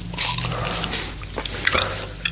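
A person biting and gnawing at a giant unicorn gummy close to the microphone, with wet mouth clicks and squishes. The gummy is really hard to bite through.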